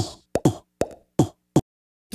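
A rapid edited string of short spoken "um"s in different voices, about five quick clips, each dropping in pitch and cut off abruptly. They stop a little before the end.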